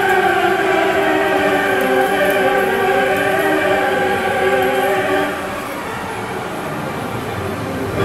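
Grand Cross Chronicle medal pusher's jackpot-chance music: a held, choir-like chord that stops about five seconds in, after which the machine's sound carries on at a lower level.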